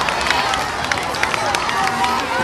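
A crowd of children's voices, many talking and calling out at once in high, overlapping voices.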